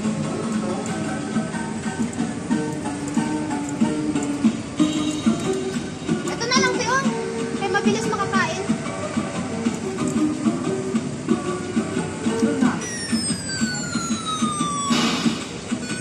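Electronic arcade game music from the claw crane machines, with voices chattering behind it. Near the end an electronic tone sweeps steadily downward for about two seconds, followed by a short burst of noise.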